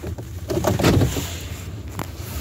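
Low, steady rumble inside a car, with a short stretch of rustling and handling noise from about half a second to a second and a half in.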